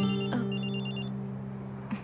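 Smartphone ringtone for an incoming call: a quick run of short high electronic beeps in the first second, over a sustained low music chord that fades away.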